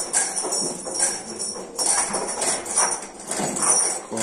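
Metal jangling and clinking in irregular bursts several times a second, as the stalled bull moves its head at the feed trough and shakes its tether chain.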